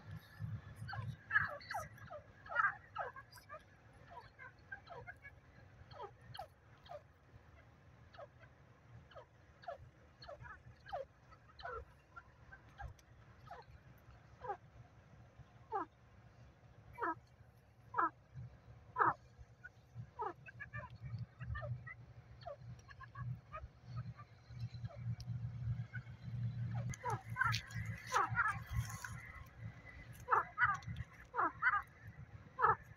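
Grey francolin (teetar) giving short, soft calls that slide down in pitch, spaced irregularly and coming thicker near the end, over a low steady hum.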